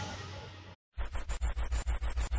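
Background music fading out, then after a brief silence a rapid stuttering transition sound effect of evenly spaced clicks, about nine a second.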